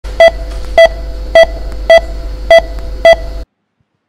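Heart-rate monitor beeping in a steady pulse: six short beeps, a little under two a second, over a low steady hum, all stopping abruptly about three and a half seconds in.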